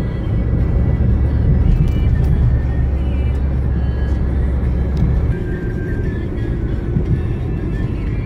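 Cabin rumble of a moving road vehicle: a deep, steady low drone that eases off about five seconds in. Faint music plays underneath.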